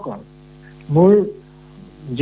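Steady electrical mains hum on a voice recording, a low buzz that fills the pause, with one short spoken word about a second in.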